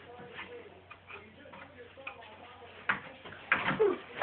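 Knocks and creaks from a wooden loft bunk bed and its ladder as a child climbs up onto it. Light clicks come first, then a sharp knock about three seconds in and a louder clatter near the end.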